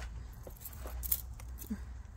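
Metal tweezers picking gritty potting soil out of a succulent's root ball, making a few faint scattered clicks and soft crackles as loose grains fall into a plastic basin.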